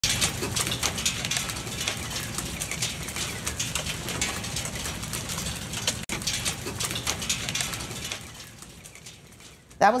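Heavy storm rain pelting a metal patio table and the garden around it, a dense patter of sharp hits over a steady hiss. It fades away about two seconds before the end.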